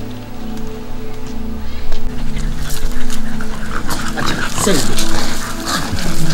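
A dog whining, one falling whine near the end, over steady background music, with scattered clicks and scrapes from about halfway through.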